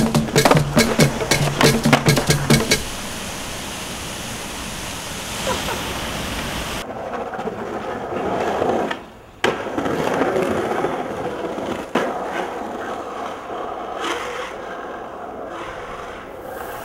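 Music with a drum beat for the first few seconds, then skateboard wheels rolling steadily on street asphalt, with a few sharp clicks along the way.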